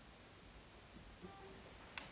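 Near silence: small-room tone with a single faint click near the end.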